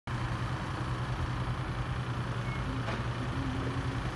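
A steady low engine hum, like a road vehicle idling, over outdoor street noise, with a brief click about three seconds in.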